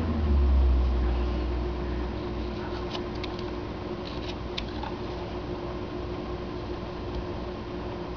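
Steady low hum of room noise, heavier and lower in the first two seconds, with a few faint clicks of a carving knife cutting into wood.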